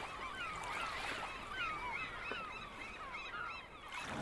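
A flock of seagulls calling: many short, overlapping cries throughout, over a faint wash of ocean waves.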